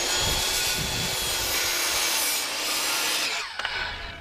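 Corded circular saw crosscutting a 2x6 pine board: the blade chews steadily through the wood over a motor whine. The sound stops about three and a half seconds in as the cut finishes, followed by a few light knocks.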